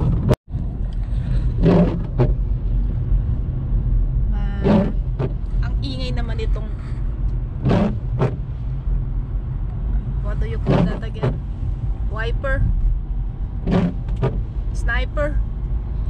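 Car driving, heard from inside the cabin: a steady low rumble of engine and tyres on a wet road. Short bits of voice sound over it, and the audio cuts out briefly about half a second in.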